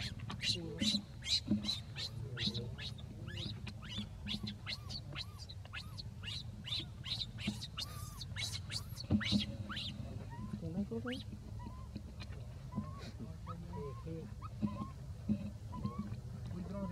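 Baby macaque screaming in distress as its mother handles it roughly: rapid, repeated high shrieks, several a second, that thin out after about ten seconds into sparser, lower cries.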